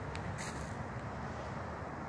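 Steady low outdoor background rumble with a few faint ticks, the only sound between phrases of speech.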